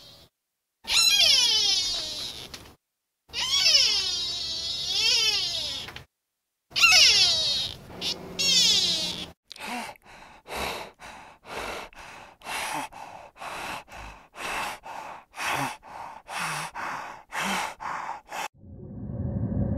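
Sika deer giving three long, high-pitched calls that bend up and down in pitch. About halfway through, a spotted hyena takes over with a steady run of short calls, about two a second.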